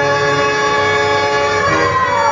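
Harmonium holding a sustained chord of steady reed tones. Near the end one higher note slides downward.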